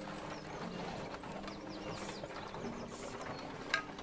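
Faint steady low hum, with a short click near the end.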